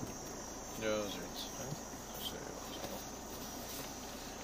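Steady, faint, high-pitched insect chirring, with a brief human vocal sound about a second in.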